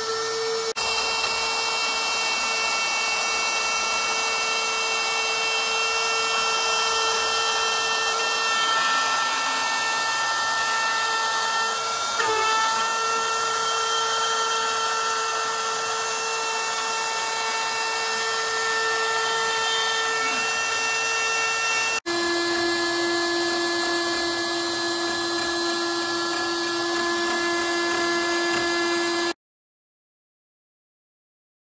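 CNC milling machine spindle and end mill cutting aluminium: a steady whine held at a constant pitch over the hiss of the cut. About two-thirds through the whine jumps to a lower pitch, and near the end the sound cuts off abruptly.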